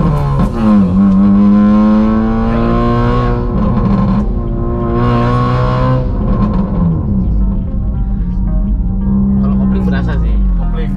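Car engine heard from inside the cabin, its pitch dipping and climbing again through gear changes, then holding steady between shifts.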